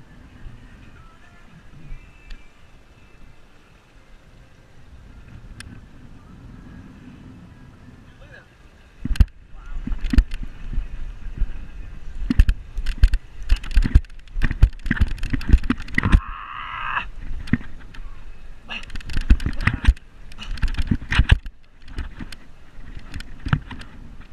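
Handling noise on a fishing-rod-mounted camera: quiet for the first nine seconds, then many irregular loud knocks and thumps as the rod is worked against a hooked fish, with a brief high tone about sixteen seconds in.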